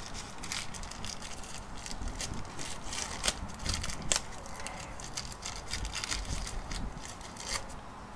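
Faint, scattered clicks and light scraping of small parts being handled on an open motorcycle cylinder head, as rubber seals are pressed into their recesses.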